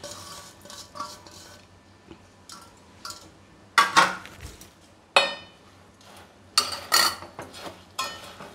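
Steel plate and spoon clanking against a stainless steel pot as fried boondi is tipped in and stirred. Light clinks at first, then sharp clanks about four seconds in, one that rings briefly just after five seconds, and a quick run of clinks near the end.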